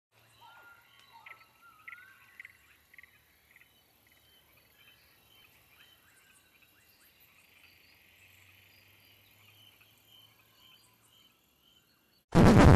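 Near silence, with a few faint chirps and short gliding whistles in the first three seconds or so.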